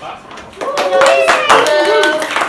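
A small group of children clapping and cheering, starting suddenly about half a second in, with high voices whooping over the applause.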